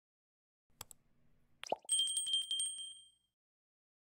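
Subscribe-button animation sound effect: a click, a short pop that drops in pitch, then a small high bell ringing in quick repeated strokes for about a second and fading away.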